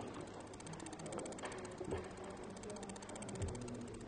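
Quiet meeting-room tone with faint, indistinct voices murmuring in the background.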